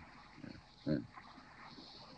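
A pause in a man's recorded talk: steady tape hiss, with a brief, short vocal sound about a second in and a fainter one just before it.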